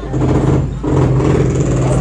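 An engine running close by, a loud steady low hum that dips briefly just under a second in.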